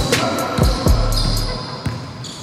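A basketball dribbled on a gym floor: about four bounces in two seconds, each a sharp low thud with a short falling ring.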